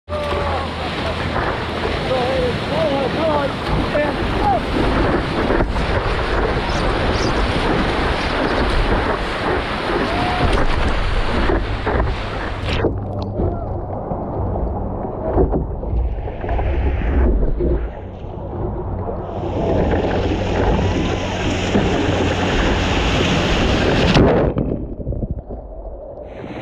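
Ocean water sloshing around a surfboard-mounted action camera, with wind on the microphone. The sound turns duller about halfway through. Then rushing whitewater swells up twice as the board moves through broken waves.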